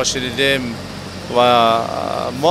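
A man speaking, over a steady low machine hum.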